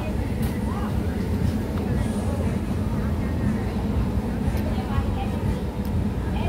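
Busy street ambience: a steady low rumble with indistinct voices in the background.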